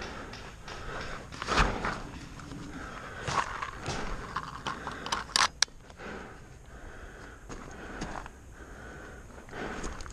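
A player shuffling and shifting gear behind a bunker, with irregular rustling and footfalls. Two sharp pops come close together about halfway through.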